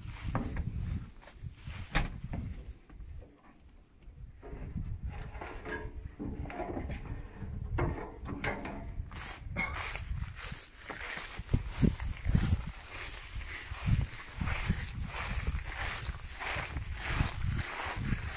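Footsteps coming down a combine harvester's metal steps and then walking through dry wheat stubble, with gusts of wind rumbling on the microphone.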